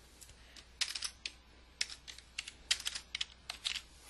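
Computer keyboard keystrokes: sharp key clicks in quick, irregular clusters as code is deleted and typed.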